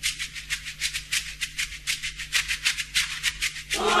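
Recorded music: a shaker playing a quick, even rhythm of about six strokes a second over a low steady hum, with singing voices coming in near the end.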